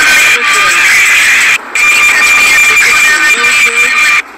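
Electric kick scooter on the move: a steady high motor whine with loud wind rush on the microphone. It cuts out briefly about one and a half seconds in.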